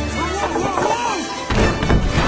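Film soundtrack music, then a sudden loud crash about one and a half seconds in as a car smashes into stacks of rubber tires.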